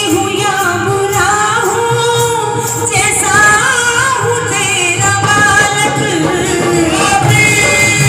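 A woman singing a Hindi devotional bhajan into a microphone, her voice amplified through a PA, in long held and gliding phrases.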